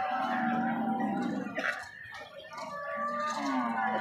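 Cattle lowing: two long, low, steady calls, the second starting about three seconds in, with fainter higher tones of market background above them.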